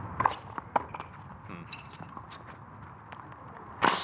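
Tennis rally on a hard court: sharp ball strikes, the loudest one near the end, over the players' footsteps.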